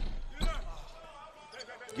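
A basketball bouncing on the court: a sharp bounce right at the start and another about half a second in, over low arena crowd noise.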